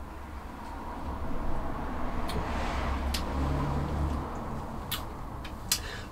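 A low rumble swells over a couple of seconds and fades again, while a few small sharp clicks come from a glass of beer being drunk from and set down on a wooden table, the last click near the end.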